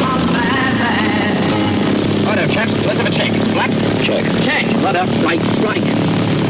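Single-engine light aircraft's piston engine running with the propeller turning, a steady low drone. Voices call out over it from about two seconds in.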